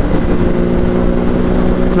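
Kawasaki Z650's parallel-twin engine running at steady high revs at around 155 km/h, its pitch holding level, with wind rushing over the microphone underneath.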